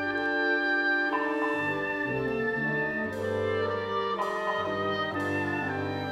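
Symphonic wind band playing, the brass carrying sustained chords that change about once a second, with brighter, fuller chords entering from about halfway through.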